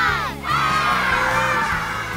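A group of children cheering and shouting together over a background music track, breaking out about half a second in right after the last number of a countdown, then slowly getting quieter.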